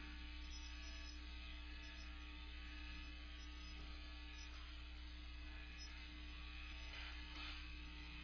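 Steady electrical mains hum with a faint hiss under it, and a couple of faint scratches of chalk on a chalkboard as a circuit diagram is drawn.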